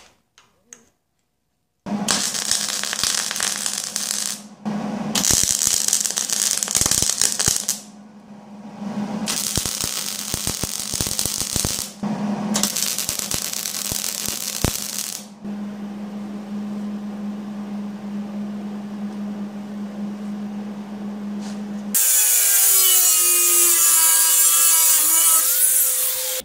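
Electric arc welder laying short welds, four crackling bursts of about two and a half seconds each, tacking steel washers onto a steel-rod frame, with a steady hum under them that runs on alone afterwards. Near the end a louder, different whirring sound with a wavering pitch takes over.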